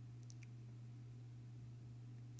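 Two faint computer-mouse clicks in quick succession, a double-click, about a quarter second in, over a steady low electrical hum.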